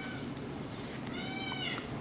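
A faint, high-pitched call a little past a second in, rising then falling over less than a second, over quiet room tone.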